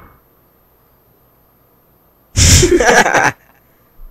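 Near silence for about two seconds, then a sudden loud vocal outburst lasting about a second, not speech, and quiet again after it.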